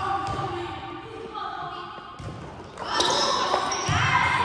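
A volleyball bouncing on a hard gym floor, echoing in a large hall, with a thud about two seconds in.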